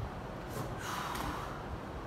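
A person's short, noisy breath or sniff through the nose, lasting about a second from half a second in, over a steady low hum.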